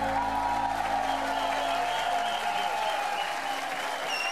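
Audience applauding as the band's final chord rings out and fades away.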